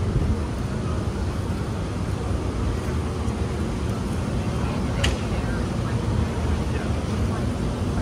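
City street ambience: a steady low rumble of distant traffic with faint voices of passersby, and a single sharp click about five seconds in.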